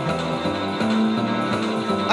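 Instrumental rock and roll backing track playing with no vocals over it, a steady bass line moving under the accompaniment.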